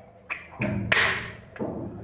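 Plastic modular switch units clicking and knocking as they are pressed and snapped into a plastic switch-plate frame: a few sharp clicks, then a louder knock about a second in and one more click.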